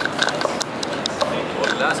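People talking nearby, with several short, sharp clicks in the first half-second or so.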